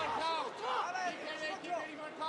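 Shouting voices from the cage side and crowd over a low arena hubbub.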